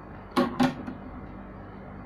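Two sharp clacks about a quarter second apart, roughly half a second in, over a steady low hum.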